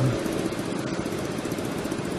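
Steady low engine and traffic noise of motor scooters and cars idling and creeping in a traffic jam, with no distinct single event.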